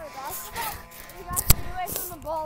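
Faint background voices talking, with one sharp thump about a second and a half in.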